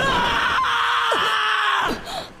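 A man's long, loud scream of terror, an anime voice actor's performance, held for nearly two seconds and cut off sharply just before the end.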